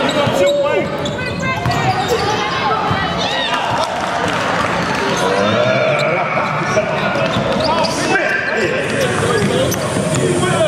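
Basketball game sounds in a large echoing gym: a basketball bouncing on the hardwood court amid continuous overlapping voices of players and spectators calling out and talking.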